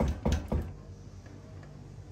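A few quick clicks and knocks in the first half second, then only a low steady hum.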